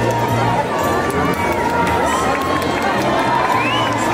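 A crowd of spectators shouting and cheering, many voices overlapping, around a bare-knuckle bout.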